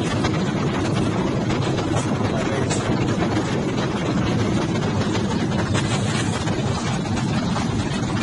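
Steady, loud rumbling noise of a moving vehicle's interior, picked up by a phone's microphone.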